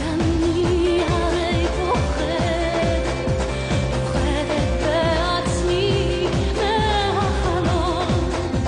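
Pop song playing: a woman's voice sings a melody with vibrato over a steady drum beat.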